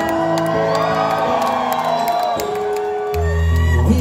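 Live band playing from the audience's position in a concert hall, with acoustic guitar and sustained keyboard chords, and whoops from the crowd over the top; a deep bass note comes in about three seconds in.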